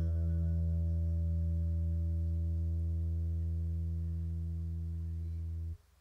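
Final chord of a song held on two guitars, an archtop electric and an acoustic, ringing on steadily with little fading, then stopped dead near the end. A last sung note trails off in the first second.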